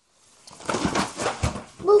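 A girl's long, breathy exhale, a tired "pfff" that ends in a short exclaimed "Buf!" of relief.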